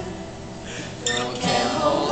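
Acoustic guitar played live, its strings ringing through a short break in the singing, then a fresh strum about a second in. A male voice comes back in singing near the end.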